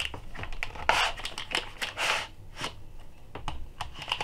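Cardboard box and hard plastic drive tray being handled as a boxed hard drive is pulled out of its packaging: rustling, scraping and small clicks, with two louder rustles about one and two seconds in.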